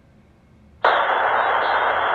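Air traffic control radio feed: a burst of steady static hiss starts suddenly about a second in, an open transmission with no voice on it yet.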